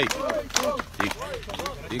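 Several people's voices talking and calling out over one another, with a few sharp clicks.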